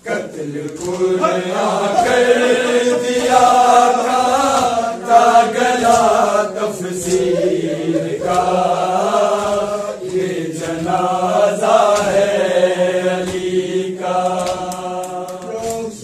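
Male voices chanting a noha, an Urdu mourning lament, together in a drawn-out melody with long held notes.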